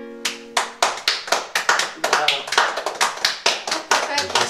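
A few people clapping together at the end of a song, about four claps a second. The last held accordion chord of the song sounds under the first claps and cuts off about half a second in.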